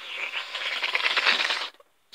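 Close, scratchy rustling and rubbing of hands against or right beside the microphone, for about a second and a half, then cutting off suddenly.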